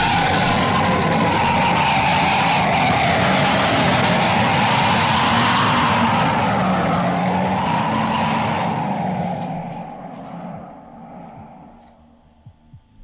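A long, loud, rasping belch played as a comic sound effect, the climax of drinking the fizziest mineral water. Its pitch wavers throughout and it fades out over the last three seconds.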